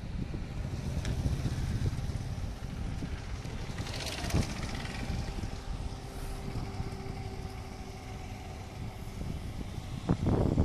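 Motorcycles passing close and riding away through shallow floodwater covering a road, their engines running and tyres splashing, loudest about four seconds in and then fading. Wind buffets the microphone throughout.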